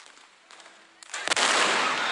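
About a second in, a rapid cluster of gunshots from a staged Wild West shootout, then a loud, continuous rush of noise.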